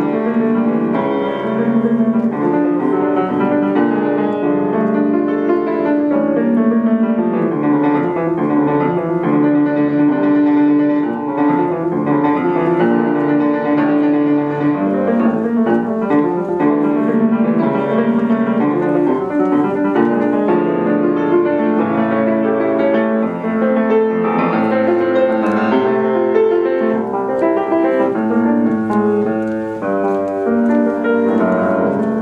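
Grand piano played solo, a continuous flow of notes with no break.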